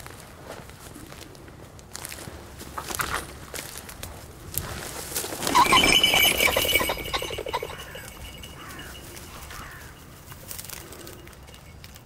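Trampling and rustling through dry rough grass, building to a loud flurry about halfway through as a cock pheasant flushes from the cover, followed by a few short calls.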